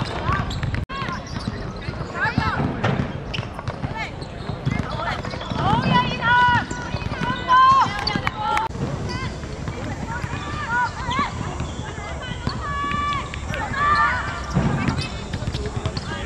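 Players' voices shouting and calling to each other across a football pitch during play, in short, high-pitched calls, with occasional sharp thuds of the ball being kicked.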